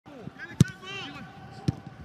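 A football kicked twice about a second apart, each kick a sharp thud, the first the louder, among players' shouts and calls on the pitch.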